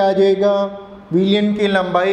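A man's voice drawing out long, level-pitched vowels in a sing-song, chant-like way, in two stretches with a short break about a second in.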